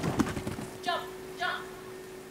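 Quick thumping footfalls of a handler and a dog running on artificial turf, then two short high-pitched voice calls about a second in, half a second apart. A steady low hum runs underneath.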